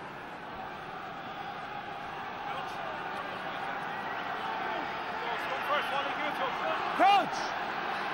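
Rugby stadium crowd noise swelling steadily while a scrum sets, with scattered voices and one loud shout about seven seconds in.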